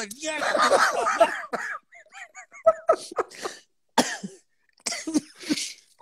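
Two men laughing helplessly, breaking into breathless, cough-like bursts and a few short high-pitched squeaks, with gaps as they catch their breath.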